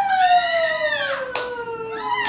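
A woman's long drawn-out call, a single held note sliding slowly downward in pitch, with a sharp click or clap about a second and a half in.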